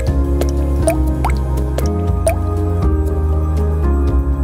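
Background music: a slow piece of held low notes that change about once a second, dotted with short rising water-drop bloops.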